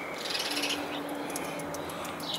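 Quiet outdoor background with faint bird calls and a faint steady tone held for about a second.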